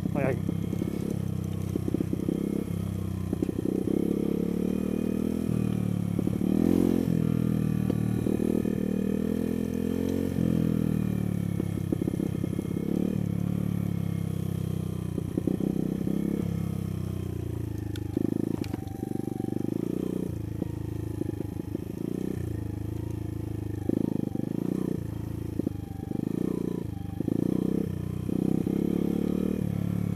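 Sinnis Blade trail motorcycle's engine revving up and down as the throttle is opened and eased off over uneven ground. From about eighteen seconds in, the revs come in shorter, choppier bursts.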